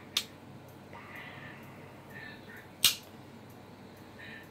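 Two short, sharp clicks about two and a half seconds apart, the second the louder, over quiet room noise.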